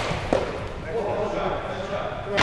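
Indoor ball hockey play in a gymnasium: a sharp knock of stick or ball on the hardwood floor about a third of a second in, then players' indistinct calls and movement, echoing in the large hall.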